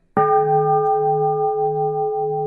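A bowl bell struck once just after the start, ringing on with several steady tones. Its low hum wavers about twice a second.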